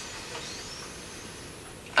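A man's slow, deep breath, faint and airy, over steady microphone hiss.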